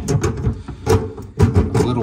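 Channel-lock pliers working a sink basket strainer's locknut, giving several sharp metallic clicks and scrapes as the nut is snugged up.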